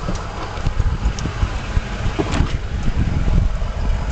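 Low, steady idle of the Tundra's 5.7-litre V8, with irregular low bumps and rubbing from the camera being moved about inside the cab.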